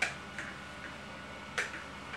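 Four sharp clicks over a faint steady hum. The first, right at the start, is the loudest, and another strong one comes about a second and a half in.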